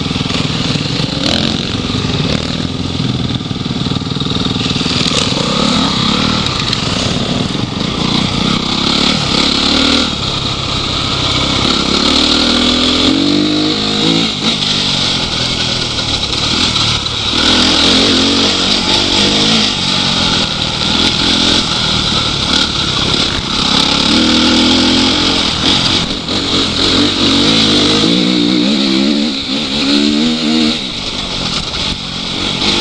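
Off-road dirt bike engine heard from on board, its pitch rising and falling again and again as the rider works the throttle and gears. A steady hiss of wind and riding noise runs underneath.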